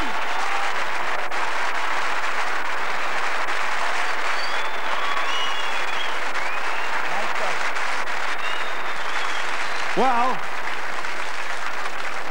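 Large theatre audience applauding steadily, with a few brief calls rising over the clapping and a short burst of a man's voice about ten seconds in.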